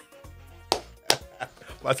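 Two sharp hand claps, less than half a second apart, about a second in, in a quiet pause with a faint low hum.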